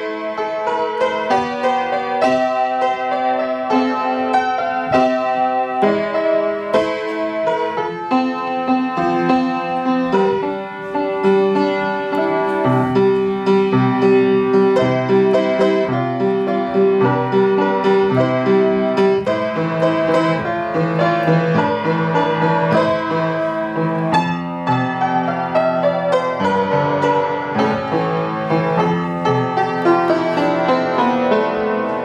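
Upright piano played solo with both hands: a continuous run of notes over a changing lower part, with one long-held note sounding over shifting low notes through the middle.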